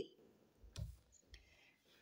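Near silence broken by a soft click a little under a second in and a fainter one soon after, from a tarot card being taken from the deck.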